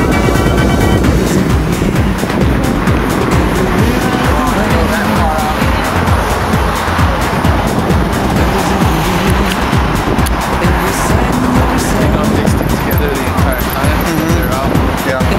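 Loud, steady road-traffic noise of passing cars, with music mixed in underneath.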